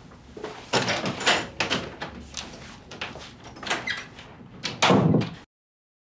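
A room door being opened and shut: a run of knocks and rattles, then the loudest bang near the end as it closes, after which the sound cuts off abruptly.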